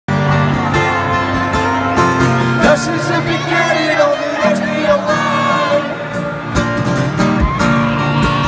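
Live music: an acoustic guitar strummed with singing over it, played loud through an arena sound system.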